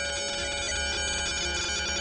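Custom FM synthesizer patch with a different delay on each output, controlled through an Arduino shield. It sounds a sustained, dense tone of many steady pitches stacked together, holding level with only slight swells.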